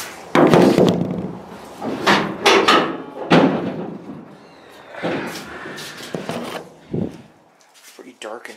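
Several metal clunks and knocks as an El Camino's hood is unlatched and swung open, mixed with bumps from the camera being set down and picked up. There is a short scraping stretch past the middle and a final thud near the end.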